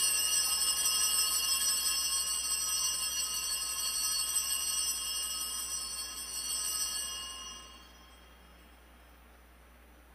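Altar bells ringing at the elevation of the consecrated host, marking the moment of consecration. The ringing is a steady sound of several high, clear tones held at an even level, which fades away about seven to eight seconds in.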